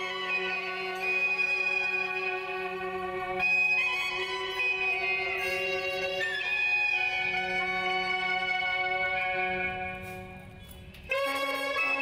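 Instrumental background music of long held melody notes over a steady low drone. It fades briefly just after ten seconds, then comes back louder.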